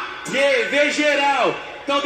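Speech: a man's voice over a microphone, talking in Portuguese.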